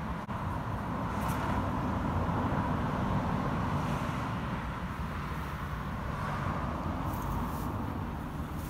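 Distant road traffic: a steady rushing noise that swells a little through the middle and eases off again, with a faint click just after the start.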